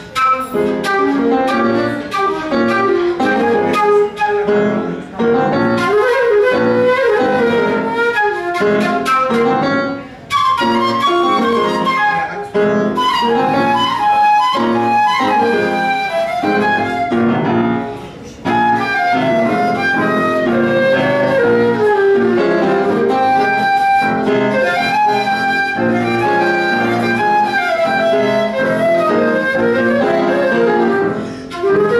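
Live jazz duo: a concert flute playing a flowing melodic line over piano accompaniment, with a couple of brief breaks in the flute line.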